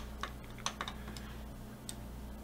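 A few faint, irregular clicks of a computer keyboard and mouse, about five in two seconds, over a steady low hum.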